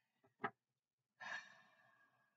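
A woman's breathy sigh of admiration that starts just past the middle and trails off, after a short click about half a second in.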